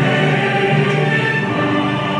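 Many voices singing together over music, holding long sustained notes.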